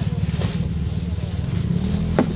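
Steady low engine drone, a small engine running at a constant speed, with a short crinkle of plastic bags being handled about half a second in.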